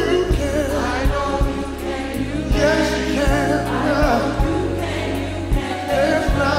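Gospel choir singing a slow worship song over instrumental backing with a steady low bass line and a regular beat.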